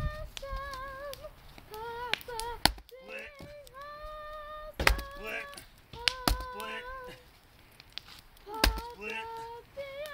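An axe splitting firewood rounds held together by a strap, one sharp chop every couple of seconds, while a child sings a tune in a high voice.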